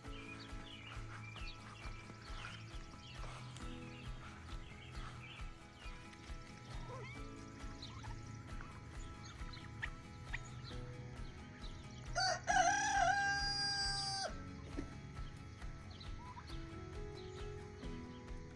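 A rooster crows once, a single call of about two seconds, rising then held, well past the middle of the stretch and louder than anything else in it. Faint small-bird chirps sound before and after it.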